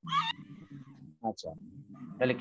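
A short high-pitched cry right at the start, over a low steady background hum, with a couple of brief voice sounds a little over a second in.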